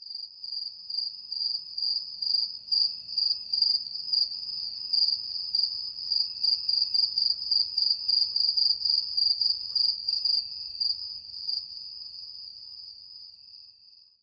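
Crickets chirping: a steady high trill that pulses about two to three times a second, fading out near the end.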